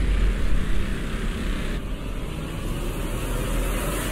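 Cinematic logo sound effect: a deep rumbling roar with a hissing rush over it, the hiss thinning about two seconds in and swelling again near the end.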